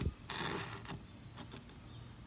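Two halves of a cut-open DeWalt 20V battery pack's plastic case pushed together across a plywood tabletop: a scrape lasting about half a second, then a few light clicks.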